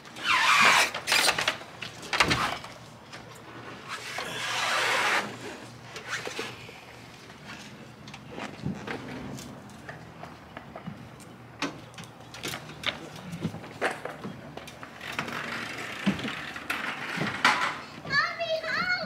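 Scrapes, clunks and knocks of a heavy touring motorcycle being shoved and leaned over in a pickup truck bed. There are several scraping sounds about a second long, near the start, midway through the first third and near the end, with scattered sharp knocks between them.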